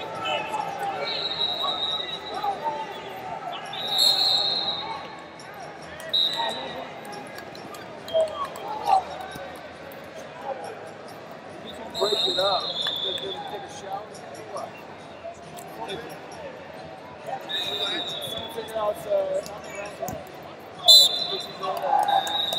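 Busy wrestling-tournament arena: a steady bed of voices from coaches and spectators in a large echoing hall, cut by short, high referee whistle blasts every few seconds from the surrounding mats. The loudest blast comes near the end, as the referee stops the action on this mat.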